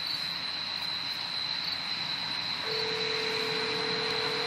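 Crickets chirping steadily at a high pitch. About two-thirds of the way in, a telephone ringback tone starts and holds for about two seconds: the call ringing at the other end before it is answered.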